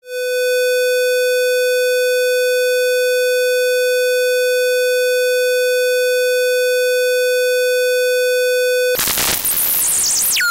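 Square-wave tone from a Bitwig Parseq-8 step modulator running at audio rate, flipping between two steps at +1 and −1: a steady, buzzy mid-pitched hum. About nine seconds in it breaks into a harsh, noisy sound with sweeping high pitches.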